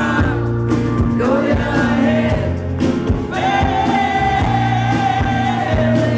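Live rock band playing: a male lead voice singing over strummed acoustic guitar, electric bass and drums, with one long held sung note through the second half.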